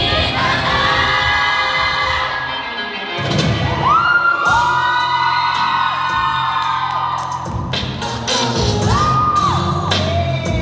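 K-pop song playing loud over a sound system, with sung vocals over a beat. The beat drops out briefly about three seconds in, then comes back in under long held sung notes.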